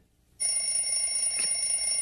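Cartoon alarm clock ringing with a steady high-pitched ring. It is cut off briefly at the start and picks up again about half a second in.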